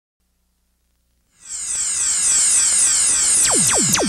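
Synthesizer intro of a funk track. About a second and a half in, a bright, high electronic wash of repeating downward sweeps comes in, then two steep pitch dives fall from high to low just before the beat drops.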